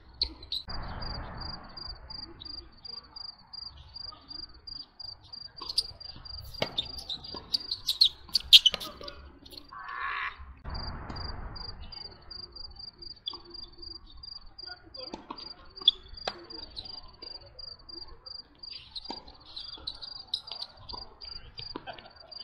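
A cricket chirping in a steady, high, evenly pulsed trill that breaks off briefly about ten seconds in. Over it come sharp pops of tennis balls struck by racquets, the loudest about eight and a half seconds in.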